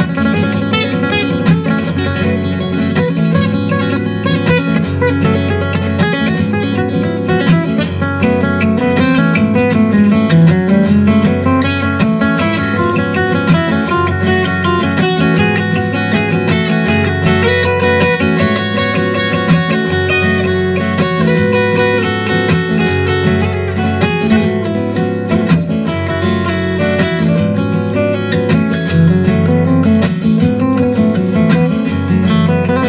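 A live band playing an instrumental passage of a Cuban guajira song, with plucked strings over a steady, repeating bass line.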